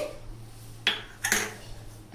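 Steel spoon clinking against a steel bowl twice, about a second in and again half a second later, while spooning out spice powder.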